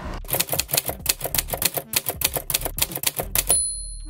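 Typewriter sound effect: a rapid run of key clacks, about eight a second, starting a moment in. It ends with a short ringing tone near the end.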